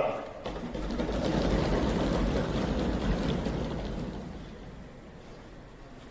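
A swell of crowd noise from the members in a large assembly hall, rising about half a second in, holding for a few seconds and dying away.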